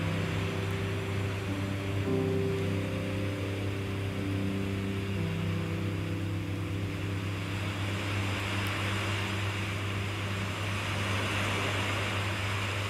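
Soft background meditation music: sustained drone notes that change pitch slowly every few seconds, over a steady low hum and hiss.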